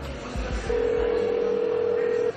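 Telephone ringback tone: one steady, unbroken tone lasting about a second and a half, starting a little way in, as an outgoing mobile call rings through. Background music fades out under it.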